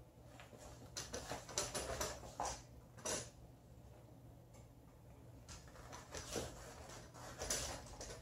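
Light handling noise from an aluminium Manfrotto tripod being lifted and moved by hand: scattered soft clicks and knocks, with a low steady hum underneath.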